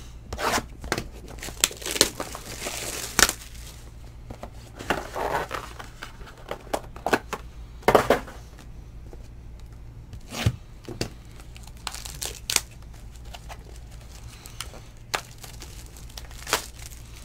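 Wrapping being torn and crinkled off a sealed box of trading cards, with irregular crackles and sharp snaps as the box is handled, and a longer stretch of rustling a couple of seconds in.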